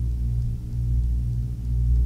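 A steady low hum with a few evenly spaced overtones, unchanged throughout.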